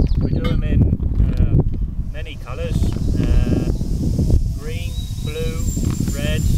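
Sheep bleating a few times, the calls wavering in pitch, over wind rumbling on the microphone. A plastic bag rustles as it is handled.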